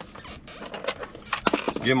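Scattered sharp clicks and rattles of small hand tools being handled and taken out, with a quick cluster of clicks about one and a half seconds in.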